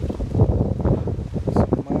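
Strong, gusty wind buffeting the microphone, a rumble that rises and falls in gusts, blown by the remnants of a hurricane.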